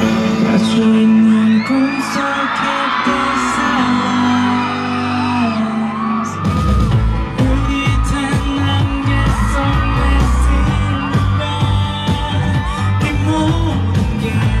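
Male pop vocalist singing live into a microphone with a band, over sustained chords at first; the drums and bass come in about six and a half seconds in and the song carries on at full band.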